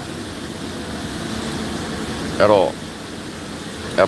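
A pause in a man's talk: a steady background hum, with one short voiced sound from him about two and a half seconds in.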